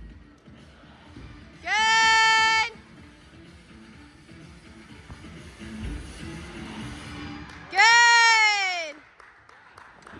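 Two loud, drawn-out high vocal calls, each about a second long: one near two seconds in, and one near the end that rises and then falls in pitch. Between them, a dull low thud about six seconds in.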